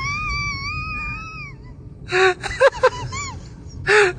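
A person's high-pitched wail, wavering up and down and held for about a second and a half before trailing off. After a short pause come a few short broken cries.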